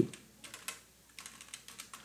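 Computer keyboard being typed on: a quiet run of uneven keystroke clicks, with a brief pause about a second in.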